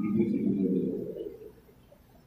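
A man's voice through a public-address microphone, drawn out for about the first second and fading away, followed by a pause with only faint room tone.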